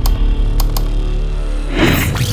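Intro music for a logo sting: a heavy low drone with a few sharp clicks in the first second and a noisy swish near the end.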